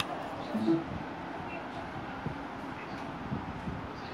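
Light handling noise from an Arduino board and its USB cable being swapped: a sharp click at the start and a few small knocks, with a brief low vocal murmur just under a second in, over a steady background hiss.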